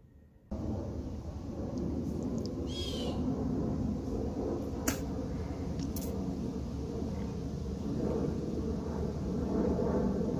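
Backyard outdoor ambience after half a second of near silence: a steady low rumble, with a bird's short descending chirp about three seconds in and two faint clicks near the middle.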